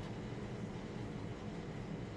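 Steady low rumble of room background noise, with no distinct events.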